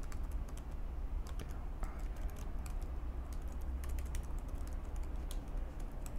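Computer keyboard being typed on: short key clicks coming irregularly as a line of text is entered. A steady low hum runs underneath.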